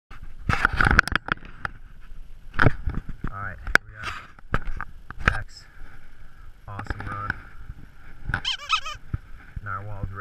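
Sharp knocks and rattles from a mountain bike and its handlebar-mounted camera being handled at a standstill, heaviest in the first second, with a few brief snatches of a man's voice.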